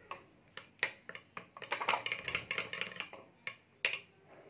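Spoon stirring a liquid mixture in a small glass bowl, clicking and scraping against the glass in quick irregular taps. The taps are sparse at first, busiest in the middle, and end with one sharper click.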